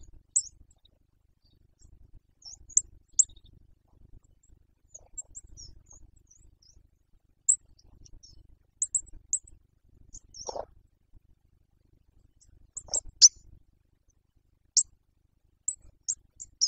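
Small songbirds giving short, high chirps and call notes at irregular intervals. Two lower, louder calls come about ten and thirteen seconds in.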